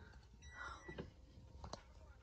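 Near silence: quiet room tone with a few faint clicks.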